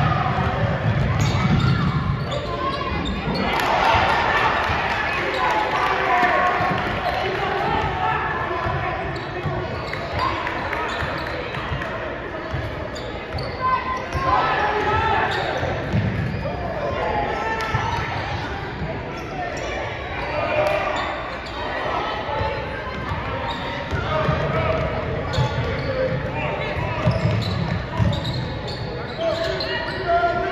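Basketball bouncing on a hardwood gym floor during play, with shouting and chatter from players and spectators, all echoing in the large gym.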